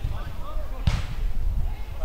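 A single sharp knock about a second in, typical of a football being kicked on an artificial-grass pitch, over the faint shouts of players.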